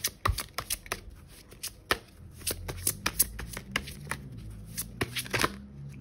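A large tarot deck shuffled by hand, a quick run of light card clicks and slaps, thickest just before the end.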